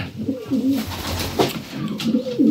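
Racing pigeons cooing in a loft, a run of low, wavering coos, with a short click about one and a half seconds in.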